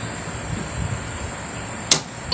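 Steady background hiss with a faint, high-pitched constant whine, and one short sharp click near the end.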